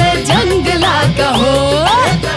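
Bollywood film song in a folk style: a singing voice over busy instrumental backing with a steady beat. A long sung 'ho' slides upward in pitch in the second half.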